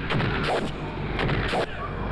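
Fight-scene sound effects: several sharp, heavy hits of punches and kicks, spread across about two seconds over a low steady background.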